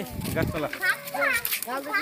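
Several people's voices talking and calling over one another, children's among them, with a short low rumble at the start.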